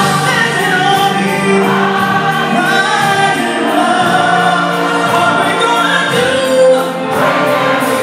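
Gospel choir singing with music, the voices held and gliding between notes over a steady beat.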